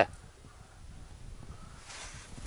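Faint outdoor background with soft, scattered low rustles and no distinct sound event.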